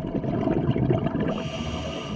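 Scuba diver breathing through a regulator underwater: crackling, bubbling noise from an exhalation, then a short hiss of an inhalation through the regulator about one and a half seconds in.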